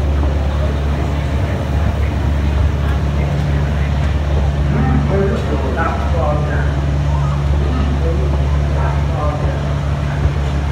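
Diesel engine of a one-third scale miniature railway locomotive running steadily as it hauls the train, a low drone heard from the carriages behind, with voices in the background around the middle and near the end.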